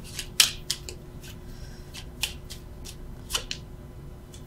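A deck of tarot cards being shuffled by hand: a run of short, sharp card slaps and flicks at uneven intervals, the loudest about half a second in.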